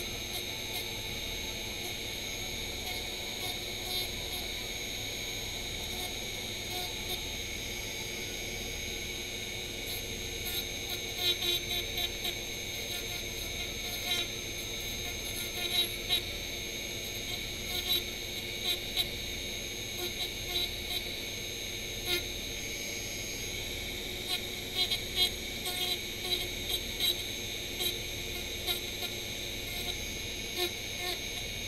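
Small handheld rotary tool running with a steady high whine. From about ten seconds in, short louder scrapes come as the bit carves into the piece in hand.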